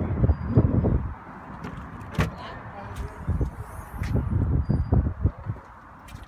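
The rear liftgate of a Toyota 4Runner SUV being opened: a few sharp latch clicks about two, three and four seconds in, amid rumbling handling noise on the phone microphone.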